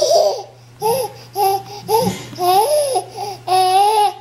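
Nine-month-old twin babies laughing in short, high-pitched bursts, about seven in four seconds, each rising and falling in pitch.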